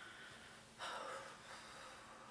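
A faint, short breath: one noisy exhale about a second in, over quiet room tone.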